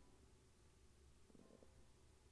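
Near silence: faint room tone with a low hum, and a faint brief sound about one and a half seconds in.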